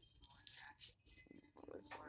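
Faint whispered and low, murmured speech, clearer in the second half.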